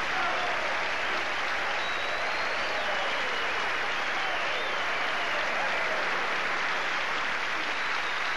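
Studio audience applauding steadily, with a few cheering voices mixed in.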